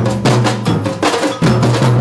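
Samba batucada drumming: large surdo bass drums and smaller snare-type drums struck with mallets and sticks in a fast, driving rhythm, with deep booming bass strokes.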